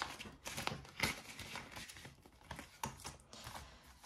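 Clear plastic cash-binder pockets and polymer banknotes rustling and crinkling as they are handled, with scattered light clicks.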